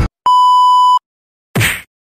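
An electronic bleep sound effect: one steady, pure beep lasting about three-quarters of a second, then a short burst of noise about a second and a half in, followed by dead silence.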